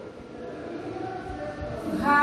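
A marker writing on a whiteboard, with soft strokes and faint scratching over a steady room hum.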